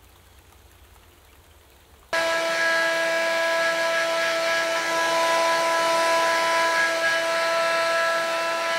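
A household appliance's electric motor switches on suddenly about two seconds in and runs loud and steady: a constant whining hum over a rushing airflow noise.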